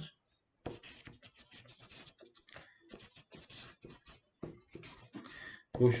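Marker pen scratching across paper in short, quick strokes as lines of script are written, starting about a second in.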